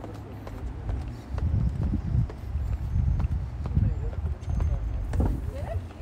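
Footsteps on pavement over an uneven low rumble, with faint voices.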